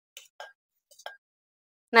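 A few faint, short clinks of a steel spoon against a steel plate and jar as cooked vegetables are scraped into a mixer jar, with silence between them.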